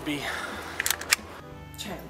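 The end of a spoken word, then a few sharp clicks about a second in, over music.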